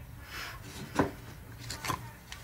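A few light knocks and a scrape as decoy pattern pieces are handled and set down, the loudest knock about a second in and a quick double knock near the end.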